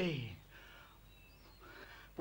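A man's voice finishing a spoken line, its pitch sliding down and trailing off in the first half second, followed by a near-silent pause.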